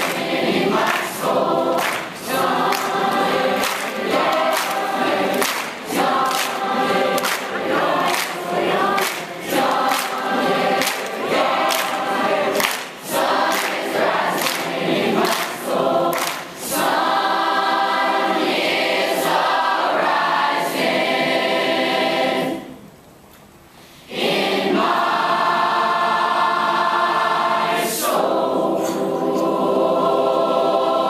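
Large mixed choir singing, with steady rhythmic hand claps over the first half. The clapping stops, the choir holds long chords, breaks off briefly a little past the two-thirds mark, then comes back on a sustained chord.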